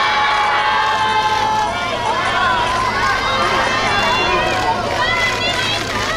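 A crowd of fans calling and shouting out at once, many high-pitched voices overlapping, with a low steady hum underneath.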